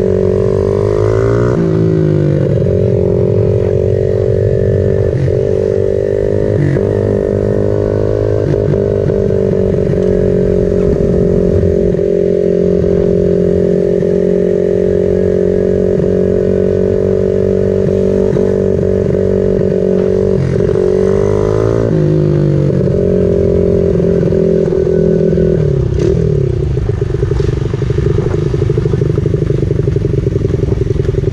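Honda 50 mini bike's 49cc single-cylinder four-stroke engine running under way, holding a steady pitch for long stretches with the revs swinging up and down a few times, around 1–2 seconds in, around 21 seconds, and dropping about 26 seconds in as the throttle eases.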